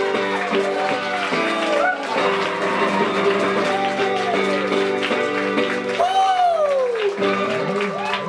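Hollow-body archtop guitar played solo: a run of notes bent up and down, ringing over steadily held lower notes.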